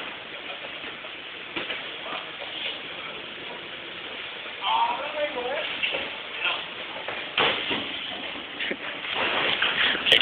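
Steady outdoor street noise, with a few short knocks and a brief distant voice calling about five seconds in.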